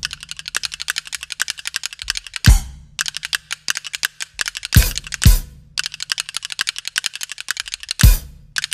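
Percussion: a fast, even run of sharp ticks over a low steady hum, with heavy drum strokes about two and a half seconds in and twice near five seconds.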